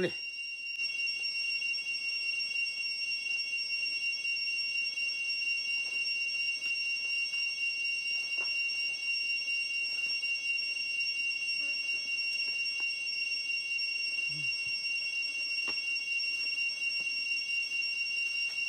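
Steady high-pitched buzzing of forest insects, several shrill unchanging tones sounding together, with a few faint clicks.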